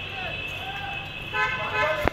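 Background voices, then a vehicle horn sounds steadily for about half a second near the end.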